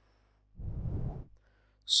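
A person's breath close to the microphone, one heavy exhale of under a second about half a second in, over a faint steady low hum.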